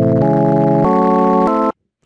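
LMMS TripleOscillator software synth playing stacked minor chords that its arpeggiator steps upward, each chord held about two-thirds of a second and pitched higher than the last. It changes chord three times and cuts off suddenly near the end.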